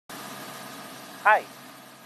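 Steady machinery hum with faint, thin whining tones running under it. A man's voice says "Hi" once, about a second in.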